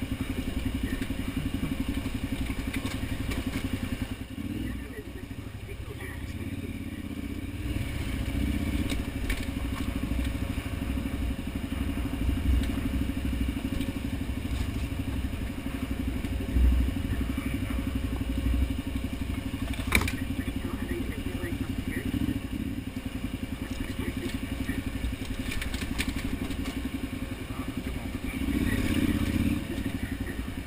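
KTM 990 Adventure's V-twin engine running steadily at trail pace. It eases off and goes quieter between about four and eight seconds in, then picks up again near the end. A few sharp knocks cut through, the clearest about twenty seconds in.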